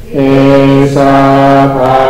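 Buddhist chanting in Pali, a male voice on a microphone reciting verses in a steady monotone on long held notes, with a short pause for breath right at the start.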